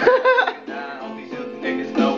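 Instrumental backing music from an electronic keyboard, pitched notes over a regular beat, with a short gliding vocal-like phrase at the very start.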